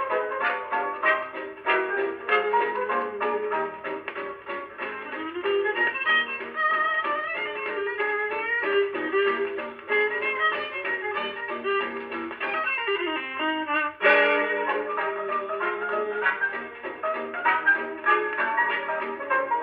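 A 1930s dance-band orchestra playing an instrumental passage from a 33rpm vinyl record on an HMV Minigram valve record player. It sounds dull, with no treble above about 4 kHz. About 14 seconds in the band breaks off for an instant, then comes back in louder.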